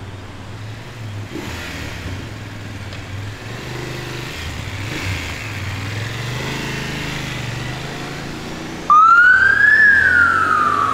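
Engines of an emergency ambulance and a motorcycle moving off through traffic, then about nine seconds in the BMW F750 GS-P emergency motorcycle's Hansch siren switches on suddenly, loud, in a wail that rises and then starts to fall.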